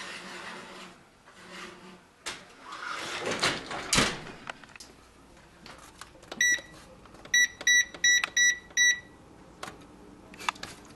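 A baking tray scrapes onto an oven rack and the oven door shuts with a sharp thud about four seconds in. Then the electric range's control panel beeps once and then five times in quick succession as the keypad is pressed to set a five-minute time.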